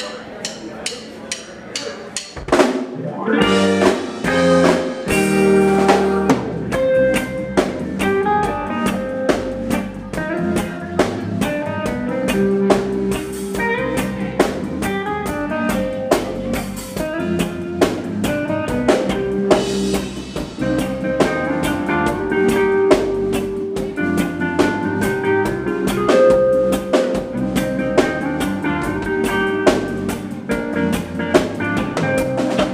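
Live reggae band playing: a drum kit with rimshots, electric guitars and organ. Light drum ticks for the first couple of seconds, then the full band comes in about three seconds in with a steady beat.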